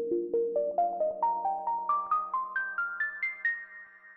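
Intro music sting: a quick run of struck, chime-like notes, about five a second, climbing steadily in pitch. The last high notes come about three seconds in and ring on, fading away.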